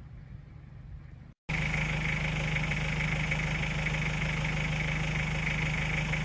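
A faint low rumble, then after a brief drop-out a loud, steady motor hum with a constant high whine cuts in about a second and a half in.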